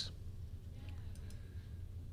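A few faint, separate clicks from working a computer mouse and keyboard, over a low steady hum.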